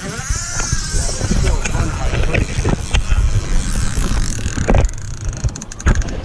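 Heavy wind and handling rumble on a handheld camera's microphone, with scattered knocks and clicks as the camera is moved about and gripped.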